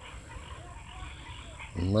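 Outdoor evening ambience with faint, short animal calls and a low rumble of background noise. A man's voice begins just before the end.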